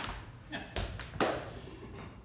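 Dance shoes striking and scuffing a wooden floor in shag footwork: several sharp footfalls, the loudest just over a second in, then they stop.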